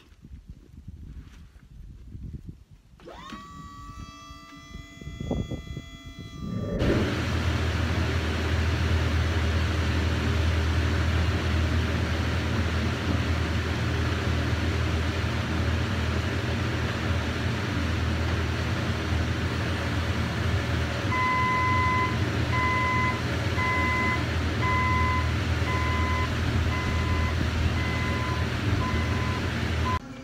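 Hyundai forklift engine running steadily with a deep hum, starting about seven seconds in after a quieter opening. About two-thirds of the way through, its reversing alarm starts beeping about once a second.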